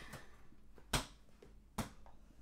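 Two short, sharp thumps, one about a second in and one near the end, against quiet room tone.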